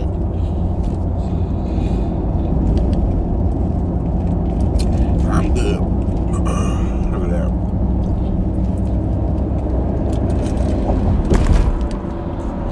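Steady road and engine rumble heard inside the cabin of a moving car, with a few short mouth or chewing noises around the middle as the driver eats a burger.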